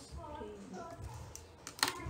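Faint talking, then a quick run of light clicks and taps in the second half, with one sharp click just before the end.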